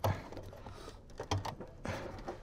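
Faint handling noise: a few small clicks and rustles as wires and harness connectors are handled at a furnace control board.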